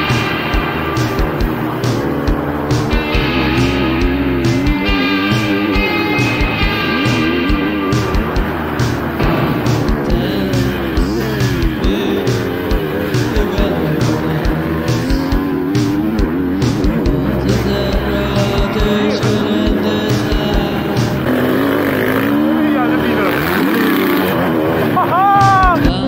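Background rock music over a GasGas MC 250F single-cylinder four-stroke motocross bike being ridden on track, its engine revving up and down with the throttle and climbing sharply in pitch near the end.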